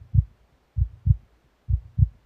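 Heartbeat: low double thumps, lub-dub, about one pair a second, repeating steadily.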